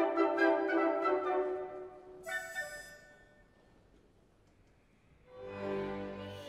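Opera orchestra playing between the soprano's sung phrases: sustained chords fading away, a bright short chord about two seconds in, a brief near-silent pause, then the orchestra coming back in near the end.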